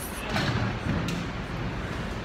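Wind buffeting a phone's microphone: a low, rumbling noise with uneven thuds.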